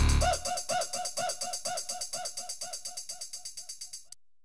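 Outro of an electronic dance track: the full beat drops out, leaving one short pitched blip repeated as a stutter effect. The repeats come faster and faster while fading away.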